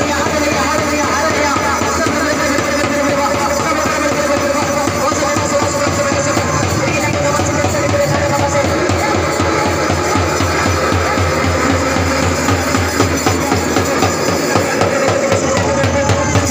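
Loud music with a steady drum beat, likely devotional worship music played over a loudspeaker; the beat comes through more strongly near the end.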